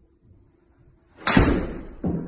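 Golf iron striking a ball off a hitting mat: one sharp, loud crack about a second in, dying away briefly in the room.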